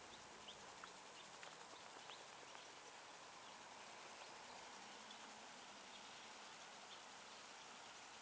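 Near silence: faint outdoor background with a few faint, brief high ticks and a small click about five seconds in.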